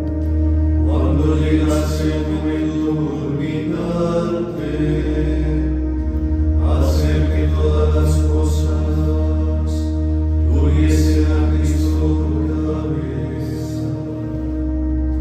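Men's voices chanting a psalm of the Divine Office in unison, in phrases of a few seconds, over a sustained low accompanying note that changes pitch about four and a half seconds in.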